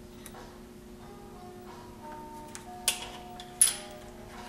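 Two sharp clicks near the end, about two-thirds of a second apart, as small steering-headset parts are fitted over the trike's spindle into the head tube. Faint background music with soft held notes plays underneath.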